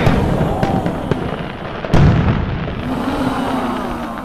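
Fireworks sound effect: bangs and crackling, with one loud bang about two seconds in, starting just as the music ends.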